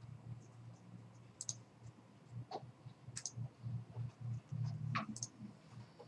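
A few sharp, separate computer mouse clicks, about five spread over several seconds, over a low background hum.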